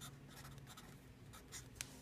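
Faint scratchy strokes of a felt-tip marker writing on paper, ending with a small click near the end.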